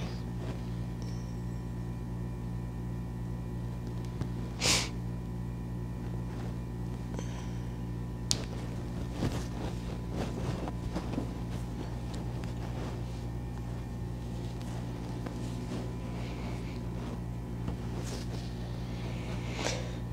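Steady low electrical hum with quiet rustling of a woven jacket as its front is fastened by hand; a short rush of noise comes about a quarter of the way in, and a single sharp click, a snap fastener closing, a little before the middle.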